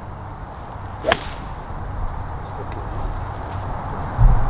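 Golf iron striking a ball off the turf: a single sharp crack about a second in.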